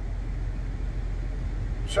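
Steady low engine hum heard from inside a vehicle's cabin while it sits idling, with no other events. A man's voice says a word right at the end.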